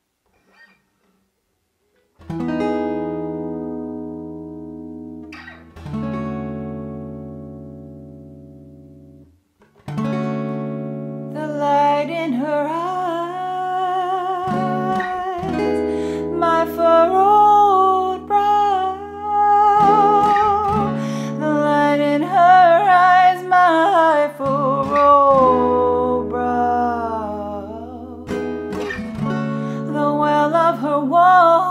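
An acoustic guitar opens a song with two strummed chords, each left to ring and fade, then settles into steady strumming about ten seconds in. A woman's singing voice, with a light vibrato, joins shortly after and carries the melody over the guitar.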